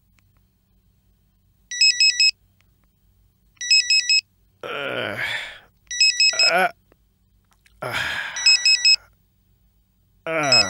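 Mobile phone ringing with a beeping electronic ringtone: four quick groups of high beeps, about two seconds apart. Between the rings a man groans sleepily twice, in drawn-out, falling sounds.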